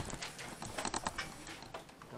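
Scattered hand clapping from a small audience in a small room, thinning out and dying away, with one sharp click right at the start.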